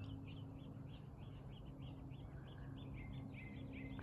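A small bird chirping in a steady series of short, high notes, about four a second, over a faint steady low hum.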